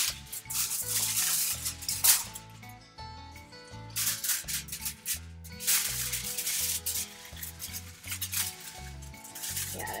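Aluminium foil crinkling in several bursts as it is folded and pressed around a glued cardboard shape, with a quieter spell about three seconds in, over background music.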